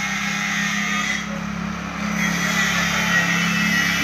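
A steady low hum of an engine or motor running without change.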